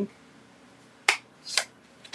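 Two short, sharp plastic clicks about half a second apart, about a second in, from a plastic ink pad case being handled and tapped.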